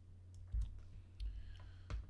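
About four sharp clicks at irregular spacing from someone working a computer, the loudest near the end, over a steady low hum.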